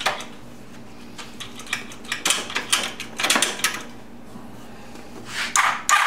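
Electric starter of a Honda Sabre V4 bumped in several short bursts. With the spark plugs out the engine has no compression, so it spins over freely in brief whirs. The bursts come about two seconds in and again near the end.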